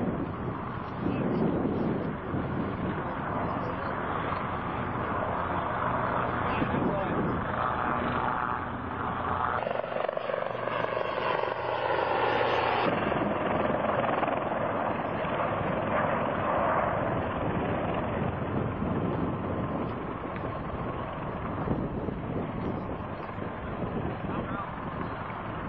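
Military helicopters in flight: steady rotor and engine noise. From about ten seconds in the sound changes for roughly three seconds as a helicopter passes closer overhead.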